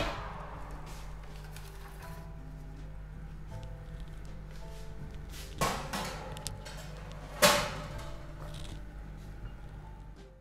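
Soft background music, with two clunks of a metal baking tray going onto a wire oven rack, about five and a half and seven and a half seconds in, the second the louder.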